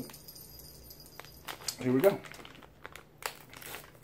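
Crinkling and crackling of a plastic candy bag being handled and pulled at to open it, a quick run of crackles in the second half.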